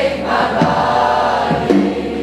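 Live pop-rock ballad with acoustic guitar and keyboard: several voices sing one long held, wavering note over the band, with soft regular beats underneath.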